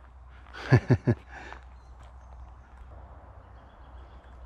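A man laughing briefly: three quick voiced bursts about a second in, then a quiet outdoor background with a faint, thin high tone.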